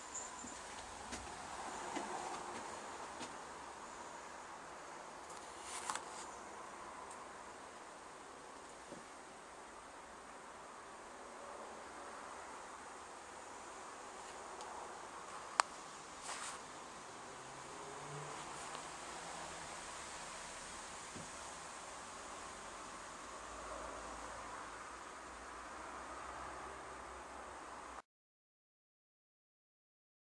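Faint steady room noise with a few scattered small clicks and knocks, one sharp click about halfway through; the sound cuts out to silence about two seconds before the end.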